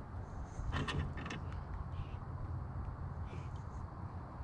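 Quiet outdoor background on a body-worn camera microphone: a steady low rumble, with a few brief faint clicks and rustles about a second in as a northern pike is handled.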